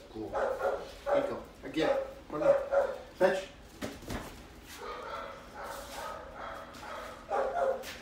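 Black Labrador retriever puppy's yips and whimpers during retrieve play, mixed with a man's low voice, with a single thump about four seconds in.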